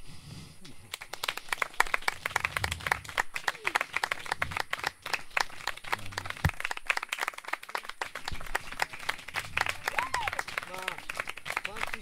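Audience applauding: many people clapping, starting about a second in, with a few voices calling out over the clapping.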